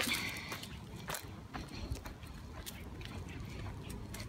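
Footsteps and light rustling over dirt and dry leaves, with scattered soft clicks, as a dog is walked on a leash.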